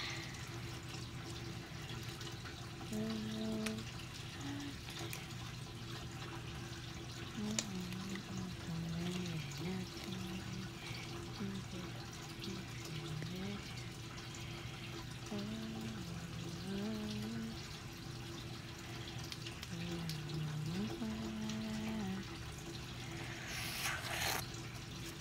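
A girl humming a wandering tune softly to herself in short phrases with gaps between them, over a steady low background hum and faint hiss.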